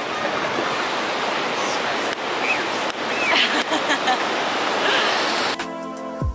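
Steady rush of surf washing over shallow water at the shoreline, with faint voices in it. It cuts off suddenly near the end as music begins.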